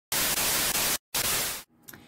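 Television static sound effect: a loud, even hiss that cuts out for an instant about a second in, comes back, and fades away.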